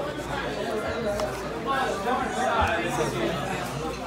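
Chatter of several voices talking in a busy dining room, with no single clear speaker.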